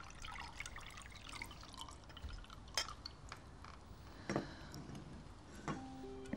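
Water dripping: many small, irregular drips, with a few louder ones about three, four and a half and near six seconds in.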